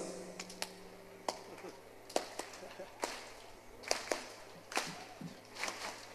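Hand claps at a slow, steady clap-along beat, a little under one a second, as the crowd starts clapping in time. Faint, with sharp single claps rather than full applause.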